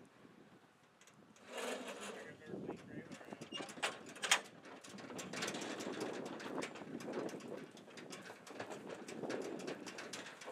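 Irregular knocks and clatter from an aluminum livestock trailer as cattle unload through its open rear gate. The clatter starts about a second and a half in, with a sharp bang around four seconds.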